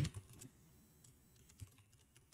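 Computer keyboard being typed on: a run of faint, quick keystroke clicks.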